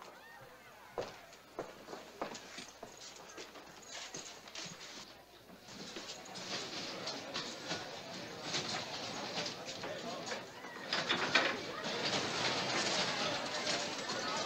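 Scattered knocks and footsteps on a hard floor. From about halfway through, these give way to a rising din of crowd murmur and clatter that grows loudest near the end.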